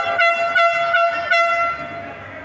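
A horn blown in one long, loud, steady note, pulsing about three times a second, that cuts off shortly before the end.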